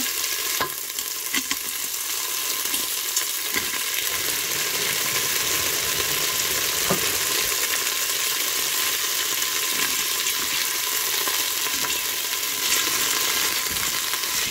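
Frozen green beans sizzling in hot bacon grease and butter in a pot: a steady frying hiss, with a few sharp clicks in the first few seconds. The ice on the frozen beans keeps the fat spitting.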